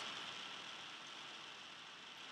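Faint steady hiss of room tone and recording noise, with no distinct sound events.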